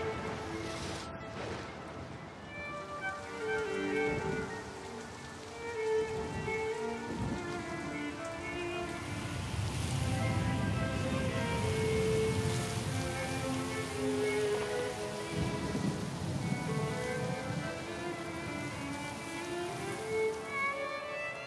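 Film score of held string notes over the hiss of rain and rushing water, with thunder near the start. The water grows fuller about halfway through.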